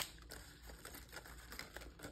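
Faint rustling and crinkling of paper cutout decorations being handled and laid down, with a sharp tap at the very start.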